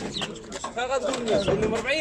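Several voices talking over one another, with no clear words.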